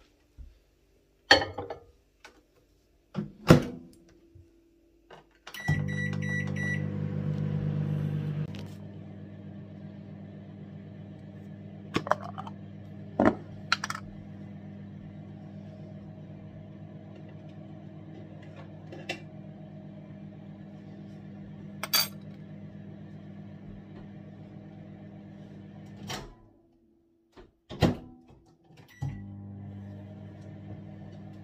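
Microwave oven: a couple of knocks, a quick run of keypad beeps, then a steady electrical hum with occasional light clinks over it. The hum stops for a few seconds near the end and starts again.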